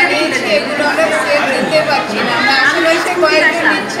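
A woman speaking, with other voices chattering behind her.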